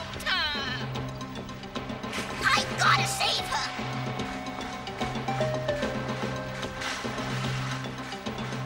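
Cartoon background score with steady sustained notes, over two short high cries from a cartoon creature: one falling in pitch right at the start, another about two and a half seconds in.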